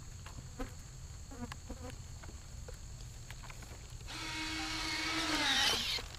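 Faint scattered footsteps on grass. Then, about two-thirds of the way in, a model aircraft's motor whine starts, grows louder and drops in pitch just before the end.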